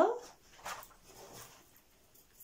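The drawn-out end of a woman's spoken word "radio", rising in pitch, followed by a quiet stretch with a small click about two thirds of a second in and faint rustling of hand movement.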